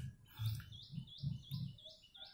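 A small bird chirping in a steady series of short, high, upward-hooked notes, about three a second.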